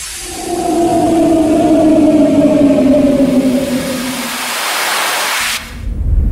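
Cinematic intro effect opening a song: a held two-note drone that slowly sinks in pitch under a rushing whoosh of noise. The whoosh swells, then cuts off suddenly near the end.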